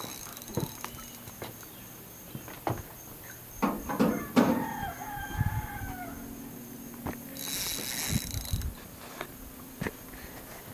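A drawn-out animal call of about two seconds in the middle, pitched and sagging a little at the end, like a distant crow. Scattered knocks and a brief hiss follow later.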